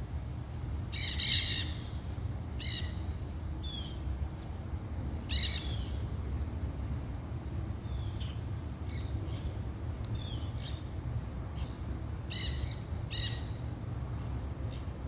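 Nanday (black-hooded) parakeets calling: loud, harsh screeches in short bouts about a second in, near three seconds, near five and a half seconds and twice near the end, with shorter chirps between.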